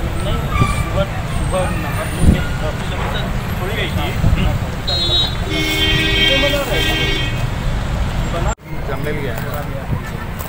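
Outdoor murmur of voices and road traffic, with a vehicle horn sounding for about two seconds in the middle. The sound drops out abruptly for a moment near the end.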